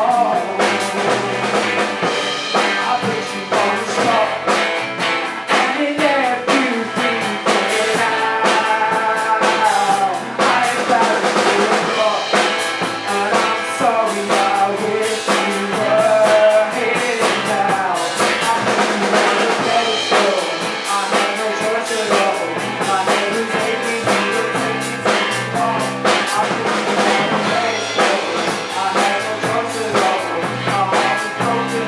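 A rock band playing live: strummed acoustic guitar, electric bass and a drum kit, with men singing over it.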